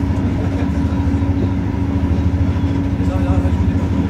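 Steady low rumble and hum inside a passenger train carriage.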